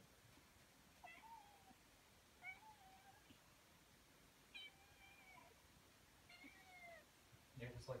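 A young kitten meowing four times: thin, high mews, each under a second long and spaced a second or two apart. A person's voice starts just before the end.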